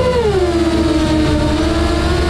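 Electric motors of a 7-inch FPV quadcopter whining under throttle, the pitch easing down over the first second and then holding steady. Background music runs underneath.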